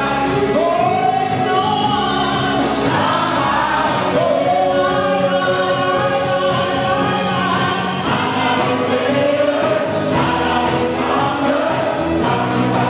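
Gospel worship music: a woman singing lead into a handheld microphone over instrumental accompaniment, with long held, gliding notes.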